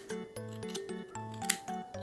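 Scissors snipping through the yarn loops of punch-needle tufting, a few short snips, under light background music with a repeating bass line.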